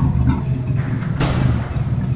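Table tennis ball struck twice during a rally, two short sharp hits about a second apart, over a steady low hum in the hall.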